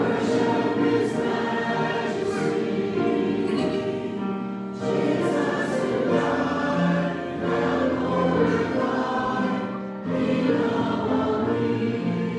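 Church choir singing in parts, with held notes and brief breaks between phrases about five and ten seconds in.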